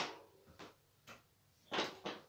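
A few short scuffs and knocks as a man mounts a mountain bike and settles on it to balance: one faint about half a second in, another about a second in, and a louder one near the end.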